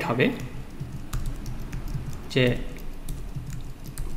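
Typing on a computer keyboard: scattered, irregular key clicks as code is entered.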